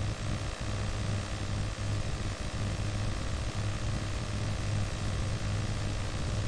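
Room tone: a steady low hum under an even hiss.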